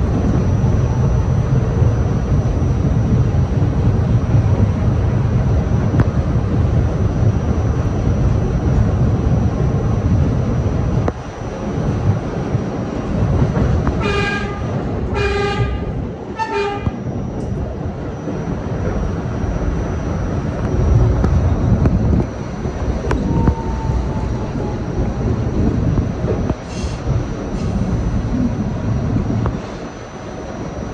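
R68/R68A subway train running with a steady low rumble of wheels on rail. About halfway through, a subway horn sounds three short toots, a little over a second apart.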